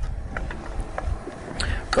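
Wooden spoon stirring sliced onion, courgette and aubergine in a frying pan on a portable gas stove: a few light clicks of spoon against pan over a faint sizzle. A low rumble of wind on the microphone runs underneath and is the loudest sound.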